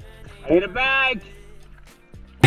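A single drawn-out vocal call, rising and then falling in pitch, heard in a brief break in the background music.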